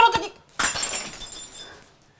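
A ceramic teacup smashing on a tiled floor about half a second in, with the pieces clattering and ringing as the sound dies away over about a second.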